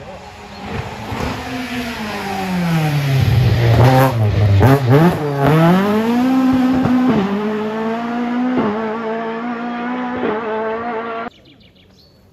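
Rally car's engine running hard as it passes close: the engine note falls as the car slows, with a few sharp cracks at the lowest point, then climbs again as it accelerates away, broken by three short dips for upshifts. The sound stops abruptly about a second before the end.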